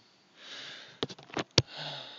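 A man sniffs in through his nose, then a few sharp clicks come in quick succession, the last one the loudest. Near the end comes a short low hum with a breathy exhale.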